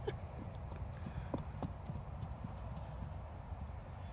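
Horse hooves striking dry dirt and turf as horses trot about a paddock: a few irregular hoofbeats in the first second and a half, over a steady low rumble.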